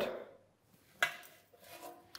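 A single short knock about a second in, dying away quickly: a stainless steel gastronorm baking tray being handled and knocking against the counter.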